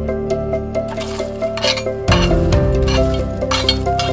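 Background music over the clinking and scraping of lump charcoal being raked with a metal ash tool in a Big Green Egg's ceramic firebox, from about a second in.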